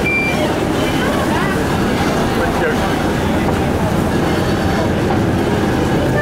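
Riverboat's engines running with a steady low rumble, under the chatter of passengers.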